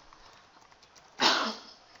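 A single cough about a second in, over faint computer keyboard typing.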